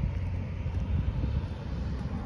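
Low, steady rumble of outdoor background noise, with no distinct events.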